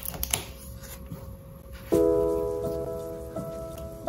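Paper rustling and a few soft knocks as the cover and sheets of a mixed-media sketch pad are handled. About two seconds in, calm background music starts suddenly with a held, slowly fading chord, over a soft rain-sound track.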